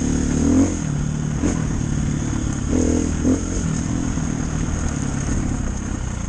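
Dirt bike engine running as the bike is ridden along a trail, the throttle opening in a short rising rev just before a second in and again around three seconds in.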